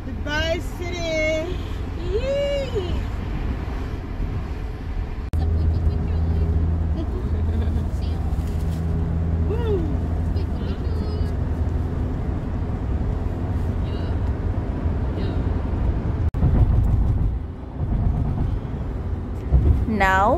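Steady low rumble of a car driving along a highway, heard from inside the cabin: engine and tyre noise.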